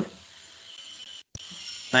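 A short pause between speech: faint steady background hiss from the microphone, cut by a brief dropout to total silence a little past the middle, with one faint tick just after it.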